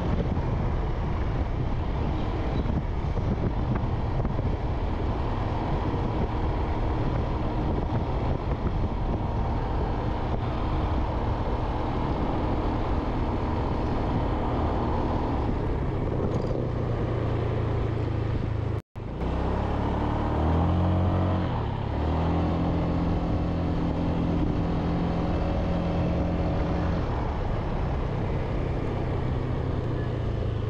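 Motorbike engine running on the move, steady over a rush of road and wind noise. The sound cuts out for an instant a little under two-thirds of the way through; after that the engine's pitch shifts up and down a few times as it changes speed, then holds steady again.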